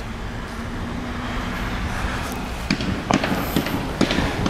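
A steady low outdoor rumble, with a few faint sharp thwacks in the second half from a carpet being beaten to clean it.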